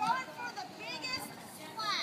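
A group of children chattering and calling out, high voices overlapping, with one louder shout near the end.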